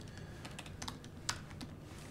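Typing on a laptop keyboard: a run of light, irregular key clicks, one a little sharper about a second and a half in.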